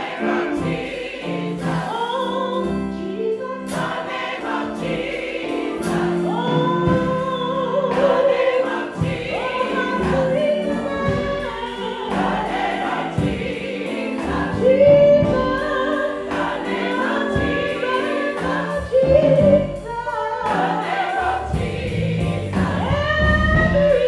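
Gospel choir singing, led by a woman soloist on a microphone, over sustained accompaniment with a steady beat.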